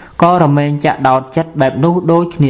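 A Buddhist monk's voice reciting in a chant-like, sing-song intonation, with long held syllables.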